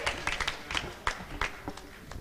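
Scattered hand claps from a church congregation, several a second at an uneven pace, thinning out and growing fainter toward the end.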